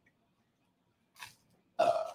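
A man's short, throaty vocal sound near the end, like a burp, after a faint brief hiss a little past a second in; otherwise the room is nearly silent.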